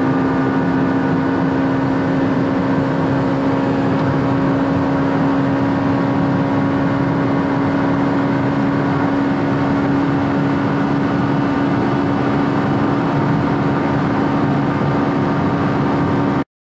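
Honda Civic Si's four-cylinder engine and road noise heard from inside the cabin, cruising at a steady speed with an even drone that holds one pitch throughout.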